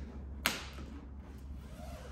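A single sharp snap about half a second in, with a brief rustle after it, over a steady low hum.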